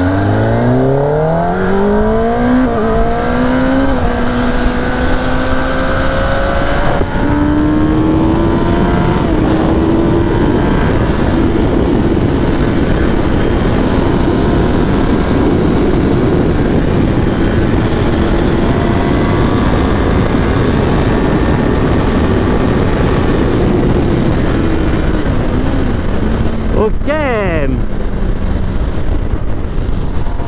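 Kawasaki ZX-10R's inline-four engine accelerating hard through the gears, its pitch climbing in three steps as it is shifted up in the first several seconds. It then holds a high, steady note at sustained high speed under heavy wind rush. Near the end come downshifts with quick throttle blips as the bike slows.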